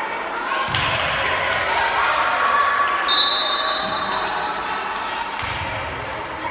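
Spectators' voices calling and chattering in a reverberant school gym, with a volleyball bouncing and striking the floor several times. About halfway through, a referee's whistle is blown for about a second.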